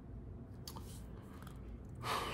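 Faint room tone with a steady low hum and a couple of soft clicks a little over half a second in.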